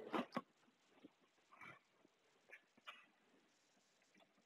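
Near silence, with a few faint, brief taps of chalk on a blackboard.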